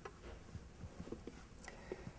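Faint, scattered small taps and clicks of a paintbrush and painting tools being handled at a palette table, over quiet room tone.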